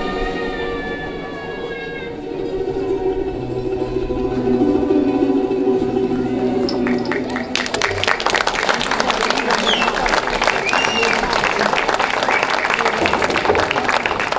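Music with long held notes, then an audience bursts into dense applause about seven and a half seconds in, with a few whistle-like calls over the clapping.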